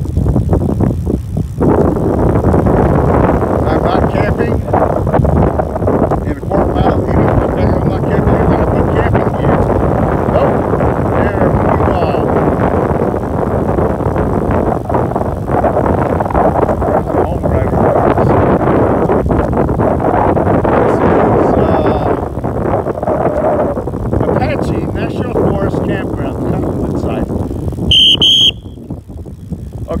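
Wind buffeting the microphone of a bicycle-mounted camera during a fast downhill ride, a loud, steady rush. Near the end there is a brief high squeal and the rush drops off sharply.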